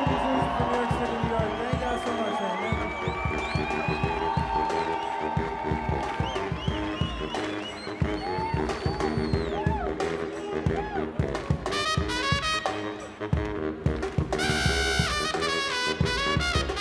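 Live brass band music: a baritone saxophone plays bending, gliding notes over a steady drum and percussion beat. From about three quarters of the way through, fast repeated high horn notes take over.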